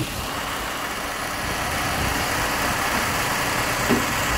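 Chevrolet Spin's 1.5-litre S-TEC III 16-valve four-cylinder petrol engine idling steadily with the bonnet open.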